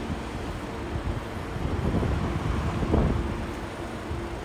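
Low rumbling background noise with a faint steady hum, swelling briefly around two to three seconds in.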